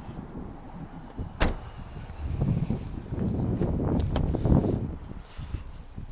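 One sharp click about a second and a half in, then a low rumble for a few seconds as the phone is carried from the boot round to the rear seats of a car.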